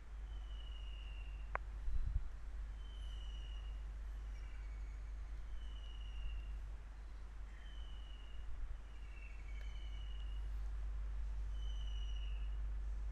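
Faint steady low hum with a series of short, high, slightly falling calls about every second and a half, typical of a bird calling. A click and then a soft bump come about two seconds in.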